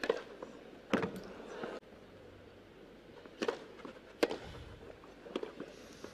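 Sharp pops of a tennis ball struck by rackets on a grass court: two hits about a second apart near the start, then two more a little under a second apart in the second half.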